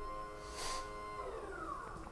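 Electric recline actuator of a Pride Quantum Edge 3 Stretto power wheelchair whining faintly as the seat back lowers. Past the middle its pitch slides down and fades as the back reaches full recline.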